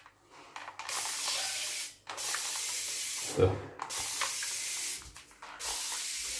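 Xiaomi plastic trigger spray bottle misting water in four steady hissing sprays of about a second or more each. Each spray keeps going after a single squeeze of the trigger, because an air channel inside the bottle holds the pressure.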